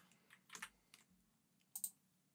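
Faint clicks of computer keyboard keys: a pair about half a second in and another pair near the end, against near silence.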